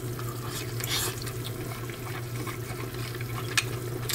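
Hot pot broth simmering on a stovetop, a wet bubbling sound over a steady low hum, with a few light clicks near the end.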